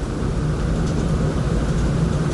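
Steady low rumbling background noise with a faint hum, with no clear events.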